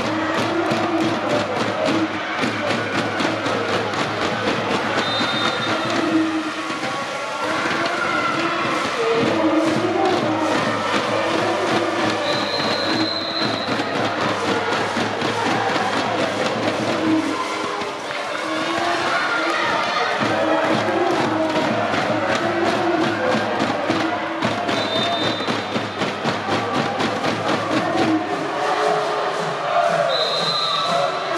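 Student cheering sections in a sports hall chanting in rhythm over a steady beat. Short, high referee whistle blasts cut through about five seconds in, a longer one around twelve seconds, another near twenty-five seconds and one at the end.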